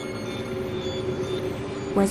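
A steady, even hum-like noise with a faint held low tone, starting abruptly at the cut into an animated segment: a background sound bed laid under the animation.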